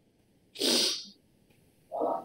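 A single short sneeze about half a second in.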